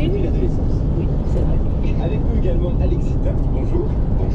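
Engine and road noise heard inside a camper van's cab while driving: a loud, steady low rumble, with faint muffled voices over it.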